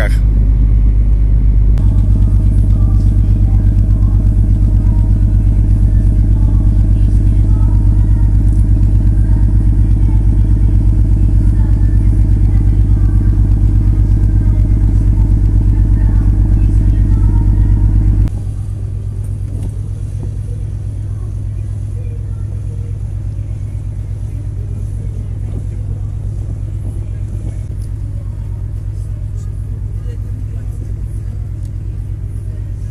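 A motor ship's diesel engines running with a steady low throb, heard from the open deck as the ship gets under way. The throb drops to a noticeably quieter level about eighteen seconds in.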